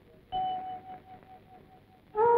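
A single bell-like ping, one clear note struck about a third of a second in, that rings and fades away over about a second.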